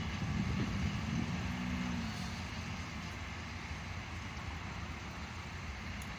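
Low, steady rumble of road traffic at a railway level crossing, easing down over the first seconds, with a brief held engine tone about a second in.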